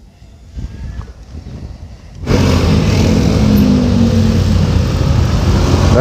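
Motorcycle engine catching about two seconds in after a low rumble, then running steadily and loudly.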